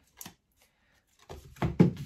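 Tarot cards and their box being handled on a cloth-covered table: a light click, a pause, then a quick run of knocks and card rustles near the end, with one sharp knock the loudest.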